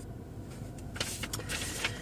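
Car cabin sound: a low steady rumble, then about a second in a rustling hiss with a few sharp clicks, like something being handled in the car.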